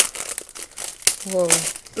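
Plastic packaging crinkling and rustling while a new puzzle cube is unwrapped and handled, with a sharp click right at the start.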